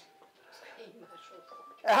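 A mobile phone playing a faint chiming melody of a few short notes at different pitches. A man starts speaking near the end.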